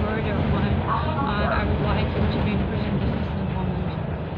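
Steady low rumble of a moving passenger vehicle, heard from inside the cabin, with a woman's voice talking over it during the first half.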